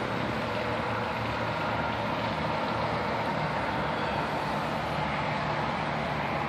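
Steady rushing background noise with a faint low hum, unchanging throughout.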